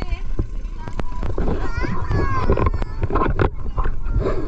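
Indistinct voices chattering on a small boat, with wind buffeting the microphone and a few light knocks.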